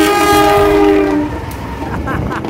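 A locomotive horn sounds a loud two-note chord as the train passes close by at speed. The chord is held for about a second and a half, sinking slightly in pitch, and then cuts off, leaving the rush and clatter of the passing coaches.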